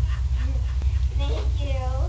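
Steady low hum through a cheap security camera's microphone, with a short high-pitched call that slides down in pitch in the second half.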